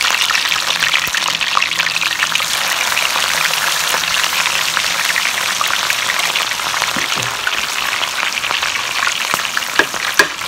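Sliced vegetables deep-frying in a pot of hot oil: a steady, dense sizzle and crackle of bubbling oil.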